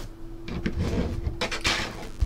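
Handling noise from an 8x10 photo in a plastic sleeve being moved by hand: rustling and small knocks start about half a second in, with a louder rustle near the end.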